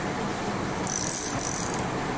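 Steady room noise, a fan-like hum and hiss, with a brief high-pitched hiss in two short pieces about a second in.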